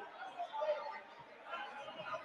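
Faint background chatter of several voices.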